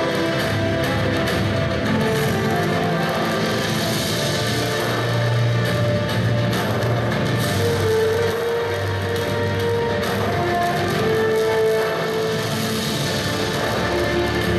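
Instrumental soundtrack music of a documentary film, heard through a hall's loudspeakers, with long held notes at a steady level.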